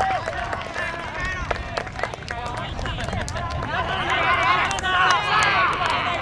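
Several voices shouting and cheering at once at a football goal celebration, loudest about four to five seconds in, with a few sharp claps among them.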